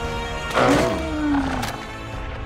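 Dramatic film-score music with a dinosaur roar about half a second in: a loud cry that drops slightly in pitch over about a second.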